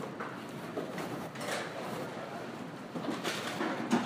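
Soft, irregular handling sounds of a raw stuffed turkey being folded and sewn shut with butcher's twine, with a few faint clicks.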